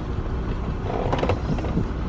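Steady low hum of a car cabin, with soft rustling and a few light clicks as someone shifts in the seat searching for gloves.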